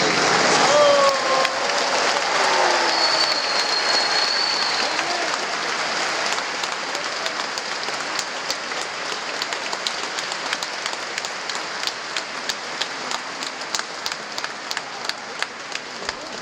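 Congregation applauding, with a few cheering voices and a long high whistle in the first few seconds; the applause slowly dies down into scattered single claps near the end.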